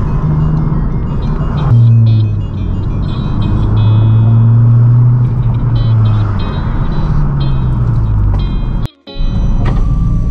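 Inside the cabin of a moving 10th-gen Honda Civic Si: the 1.5-litre turbocharged four-cylinder drones low, its pitch slowly rising and falling with the throttle, under music with short high notes. The sound drops out for a moment near the end.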